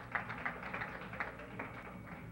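Scattered hand claps from a banquet-hall audience, a few uneven claps a second, thinning out toward the end, over a faint steady hum.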